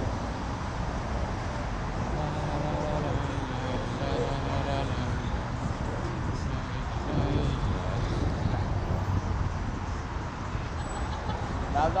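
Steady rumble of road traffic from the car lanes beside and below a pedestrian bridge walkway, with snatches of passers-by talking.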